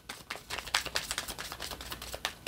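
A deck of oracle cards being shuffled by hand: a quick, irregular run of light clicks and flicks as the cards slide and tap against each other.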